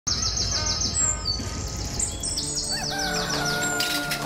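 Small birds chirping: quick runs of high, repeated chirps. A sustained musical note comes in underneath about halfway through.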